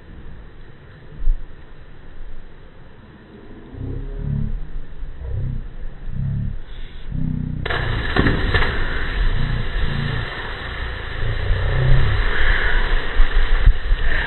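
Slow-motion audio of a cliff jump into a pool, played four times slower and so pitched far down. First come deep, drawn-out slowed voices. About halfway through a sudden, long, low rushing splash sets in as the jumper hits the water, and it swells near the end.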